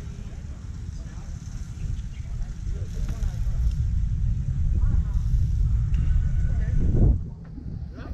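Wind buffeting the microphone in a low, steady rumble, with faint voices of players and spectators in the background; the wind noise drops away suddenly about seven seconds in.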